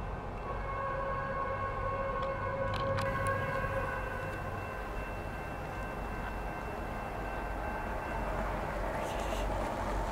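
Locomotive air horn, a Nathan P5 five-chime, sounding one long chord over a low rumble, some of its notes dropping out about four seconds in and the rest fading by about eight seconds. The horn sounds out of tune: "so bad".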